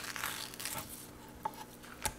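Fillet knife sliding between a lionfish fillet and its skin on a wooden cutting board, making soft, quiet scraping and rustling strokes as the meat is pushed and pulled off the skin.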